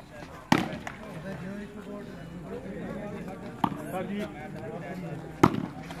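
Sharp smacks of a volleyball struck by hand during a rally: two close together about half a second in, another a little past three and a half seconds, and a loud one near the end, over the voices and shouts of a crowd.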